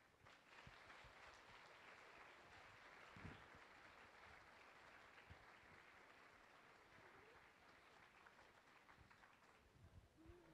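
Faint audience applause, a steady patter of many hands clapping that begins just after the start and tails off slightly near the end.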